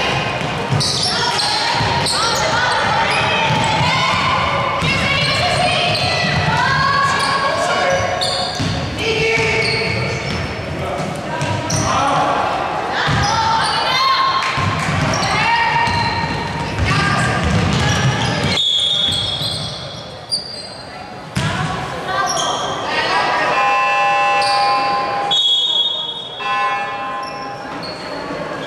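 Indoor basketball game in a large hall: players' and coaches' voices calling out over a basketball bouncing on the hardwood court, with the hall echoing.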